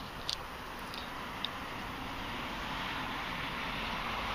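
Steady outdoor background noise, an even hiss that grows slightly louder, with a few faint short high chirps in the first second and a half.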